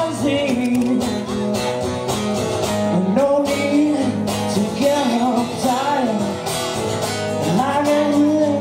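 A man singing with his own strummed acoustic guitar, live; the voice holds long notes that bend and slide in pitch over steady strumming.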